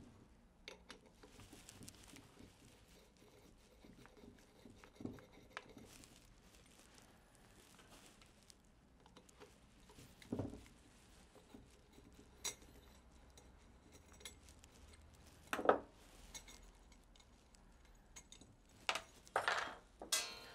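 Faint, scattered metallic clicks and taps with quiet stretches between: a Phillips screwdriver working screws out of a stainless-steel submersible pump housing and its mesh inlet screen being handled. A few louder knocks come about halfway and again near the end.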